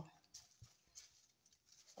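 Near silence: room tone with a few faint, scattered taps.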